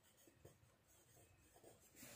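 Near silence, with faint scratching of a pencil writing a word on a workbook page.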